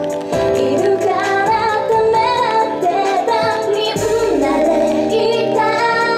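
J-pop dance song played over an outdoor stage PA: young women's group vocals in handheld microphones over a backing track with a steady beat.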